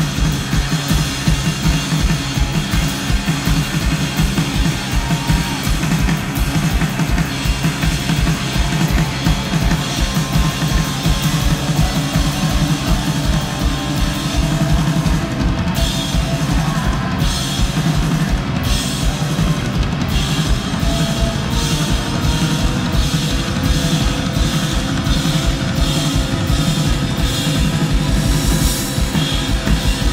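Live rock band playing an instrumental passage without vocals: drum kit prominent, with a steady kick-drum beat and snare, over electric guitar and bass guitar.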